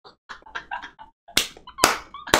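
Quiet breathy laughter, then two sharp hand slaps about half a second apart in the second half.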